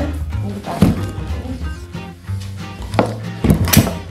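Knocks and clunks from the frame of an Enhill Armadillo folding stroller being lifted and opened out: one about a second in and a cluster of them near the end, over background music.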